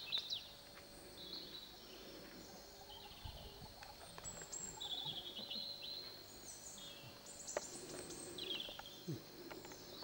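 Birds singing in short, repeated high chirping phrases over faint outdoor background noise, with a single sharp click about seven and a half seconds in.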